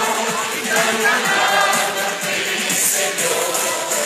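Large crowd singing together in unison with music, many voices blended like a choir and keeping on without a break.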